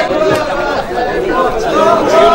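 Many men's voices at once, overlapping in long drawn-out rising and falling lines, like a group chanting.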